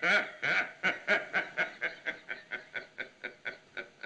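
A man laughing, a long run of chuckles at about four or five a second that slowly grow quieter.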